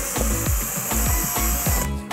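Cordless drill running with a 6 mm bit boring through Styrodur foam board, a steady high hiss that stops near the end. Background music with a steady beat plays underneath.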